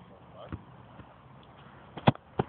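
A football kicked or bouncing: a dull thud a little after half a second in, then a softer knock about half a second later, over faint background voices.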